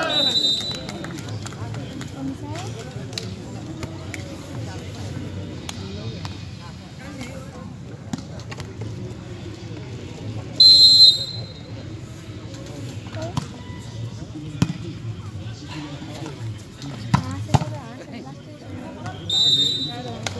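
Volleyball referee's whistle blown three times: a short blast right at the start, a longer, louder one about ten and a half seconds in, and another just before the end, marking the end of rallies and the call to serve. Between them, sharp smacks of the ball being struck over steady spectator chatter.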